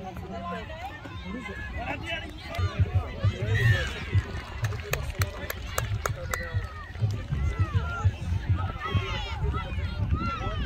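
Indistinct voices of spectators and players calling and talking across an outdoor playing field, over a low thumping rumble. A quick series of sharp clicks comes about five seconds in.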